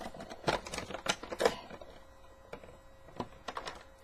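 Clear plastic bag crinkling and crackling as it is handled, with a dense run of sharp crackles in the first second and a half, then scattered crackles.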